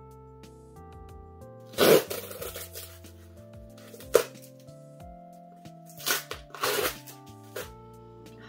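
Cardboard book mailer being ripped open along its tear strip: a long loud rip about two seconds in, a short one around four seconds, then more rips and crinkles near the end, over soft background music.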